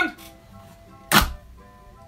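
A cardboard Koala's March cookie box giving one short, sharp thunk about a second in as it is ripped open, over faint background music.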